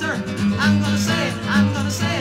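Folk-country band music: a guitar and a steady bass line under a wavering lead melody line.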